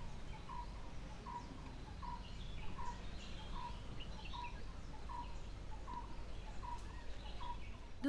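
Countryside ambience: a bird repeating one short call roughly every second, with other small birds chirping higher up, over a steady low background noise.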